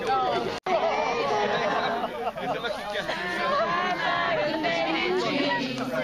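A group of young voices talking, calling out and laughing over one another, with no single clear speaker. The sound breaks off completely for an instant about half a second in.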